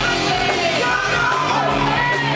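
Live rock band playing: a male vocalist singing loudly into a microphone over electric guitar, bass guitar and a drum kit with crashing cymbals.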